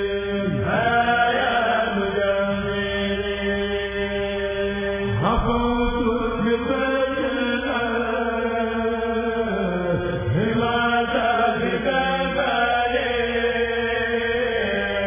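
A kurèl, a group of men's voices, chanting a qasida together in long, held notes, with the melody sliding into a new phrase about every five seconds.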